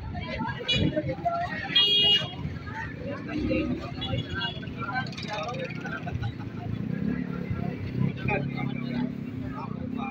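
Street traffic, with a brief vehicle horn toot about two seconds in. A small motorcycle engine is running and passing, its steady hum clearest in the last few seconds, under people talking in the background.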